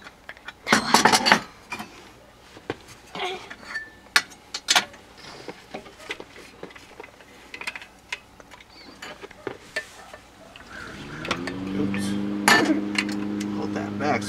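Clinks and knocks of a glass coffee-grinder jar and an insulated steel water bottle being handled, its cap being opened. About eleven seconds in, the steady drone of a lawnmower engine fades in and keeps running.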